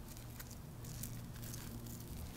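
Faint soft ticks and rustles of fingers handling fresh apple slices over rolled oats in an enamel dish, over a low steady hum.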